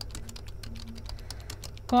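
Computer keyboard being typed on: a quick run of keystroke clicks, several a second.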